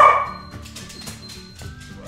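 A dog gives one loud, short bark right at the start, over background music with a steady beat.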